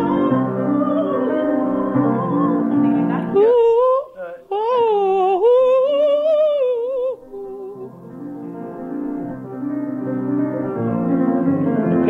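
Piano chords accompany an operatic soprano voice. A few seconds in, the voice rises into a high sustained line with wide vibrato for about four seconds, then drops back under the piano. It sounds like an improvised duet rehearsal on a home tape recording.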